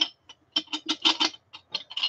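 Loose CPU chips clinking and rattling against each other and the walls of a clear plastic container as it is tipped and shaken: a quick series of light clicks, densest around the middle.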